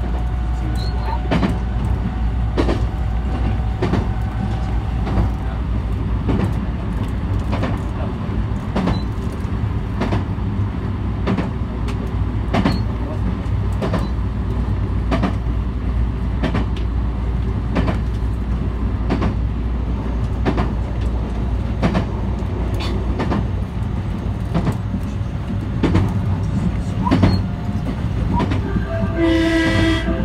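JR West 223 series electric train running along the line, heard from on board: a steady low rumble with regular clicks of the wheels passing over rail joints. Near the end, a short run of pitched tones sets in over the running noise.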